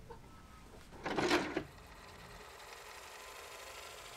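A short breathy laugh about a second in, then quiet room tone.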